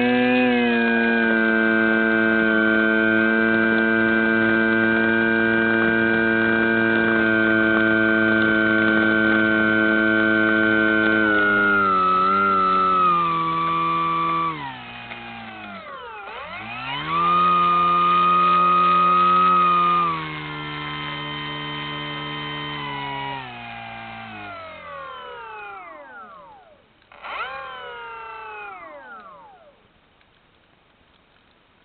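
Electric motor and propeller of a Flyzone Tidewater RC float plane whining steadily at high throttle on a fast taxi across the water, then throttled down about halfway, run up again for a few seconds, and wound down in falling glides. A last short burst of throttle comes near the end before the motor stops at shutdown.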